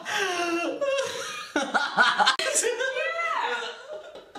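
Several people laughing at once, with voiced, pitched laughter running through most of the stretch.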